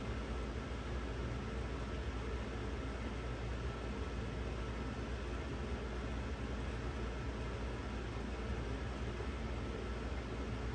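Steady background noise: an even hiss over a low hum, with no distinct sounds standing out.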